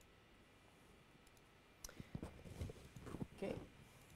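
A quick run of sharp clicks and soft knocks from a laptop being operated, about two seconds in, over faint room tone.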